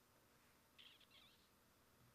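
Near silence: room tone, with one faint, brief high-pitched sound just under a second in.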